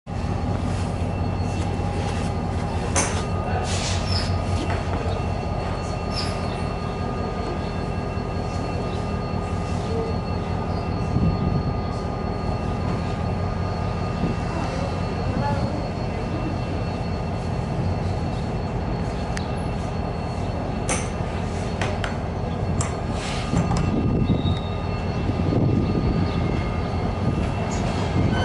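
Steady diesel train drone with constant humming tones and wheel noise, heard from a carriage window, with scattered clicks and knocks. A louder rumble builds over the last few seconds as an oncoming diesel locomotive draws near.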